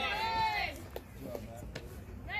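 A high-pitched voice calling out in a drawn-out shout that fades about two-thirds of a second in. After it comes quieter background with a few faint clicks.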